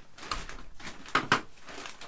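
Compost being scooped and dropped into a plastic crate: rustling with a few sharp knocks, two of them close together just past a second in.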